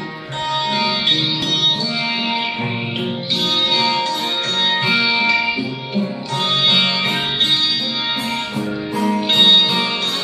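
Two acoustic guitars played together over a pre-recorded backing track: an instrumental intro with no singing, the chords changing about every three seconds.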